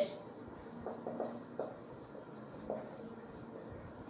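Marker pen writing on a whiteboard: a series of faint short strokes as words are written out.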